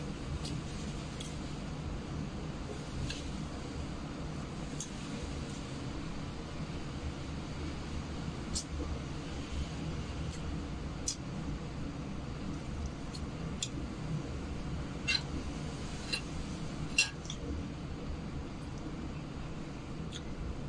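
Light clicks and clinks of tableware, scattered every second or few as someone eats from a plate with their hands, a little sharper near the end, over a steady low hum.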